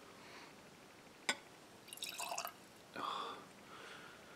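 A small measure of vodka being poured and dripping into a wine glass: one sharp glass clink about a second in, then two short, faint bursts of trickling liquid.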